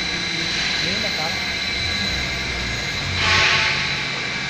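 Hot-foil slitter-rewinder running, a steady mechanical drone with a faint high whine. A louder rushing hiss swells briefly about three seconds in.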